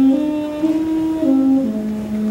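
Flugelhorn playing a slow, mellow melody of held notes. The line steps up over three notes, comes back down, and settles on a long low note near the end.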